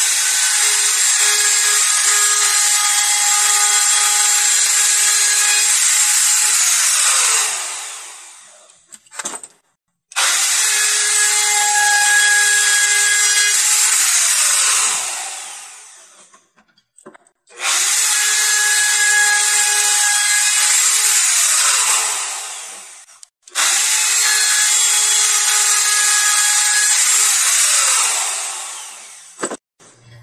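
Handheld router with a 3/8-inch roundover bit running and cutting the edges of a wooden board, four runs in all. Each run starts suddenly and, after it is switched off, winds down with a falling pitch over a second or two.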